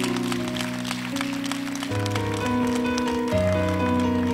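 Instrumental passage of a slow ballad played on an electronic keyboard: held chords over sustained bass notes, the harmony changing about every second and a half, with light high ticking on top.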